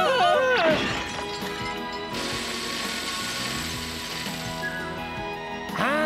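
Cartoon soundtrack: background music under a frightened cry at the start and another near the end, with a noisy sound effect starting abruptly about two seconds in and lasting about three seconds.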